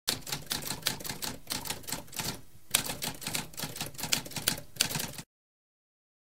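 Typewriter typing: a rapid run of mechanical keystrokes with a brief pause a little over two seconds in, then cutting off abruptly a little after five seconds.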